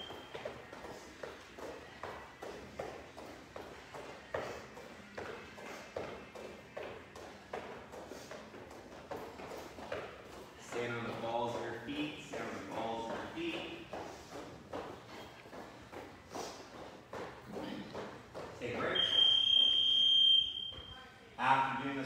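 Several people doing line hops on a floor, their landings making soft, irregular thumps. Near the end an interval timer gives one long, high beep.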